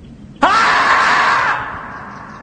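The 'screaming marmot' meme sound effect: one long, loud scream that starts suddenly about half a second in, holds for about a second, then trails off.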